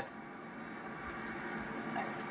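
Steady, faint background noise from a television's golf broadcast playing in a room, slowly growing louder.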